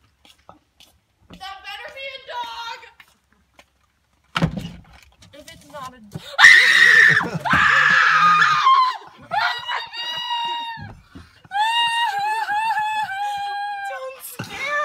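Excited high-pitched screaming from family members: a loud burst of screams a little past halfway, then long drawn-out squeals near the end.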